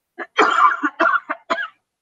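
A woman coughing several times in quick succession, a short fit of coughs she puts down to talking too fast.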